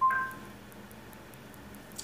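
A short electronic chime from a Google Home smart speaker, one brief tone with a higher note over it that fades within a moment, as the Assistant takes the spoken "pause music" command. Quiet room tone follows.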